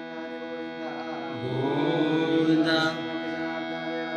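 Devotional mantra chanting over a steady drone, with a louder chanted phrase swelling from about a second in and breaking off near three seconds.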